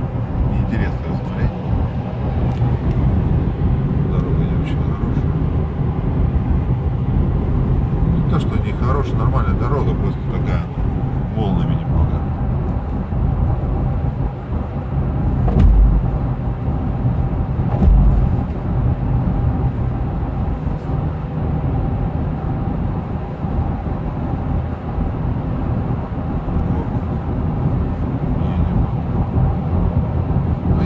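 Inside the cabin of a 2016 Toyota Land Cruiser Prado 150 at highway speed: the 2.8-litre four-cylinder turbo-diesel's steady drone mixed with road and tyre noise. Two short low thumps come about 16 and 18 seconds in.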